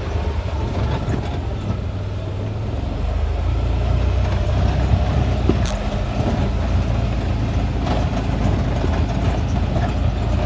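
Vehicle driving along a rough dirt road, heard from inside the cabin: a steady low engine and road rumble that gets a little louder about three seconds in, with a few short knocks and rattles from bumps.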